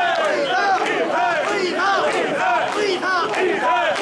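A crowd of mikoshi bearers chanting a rhythmic shouted call in chorus as they heave the portable shrine along, many men's voices rising and falling together several times a second.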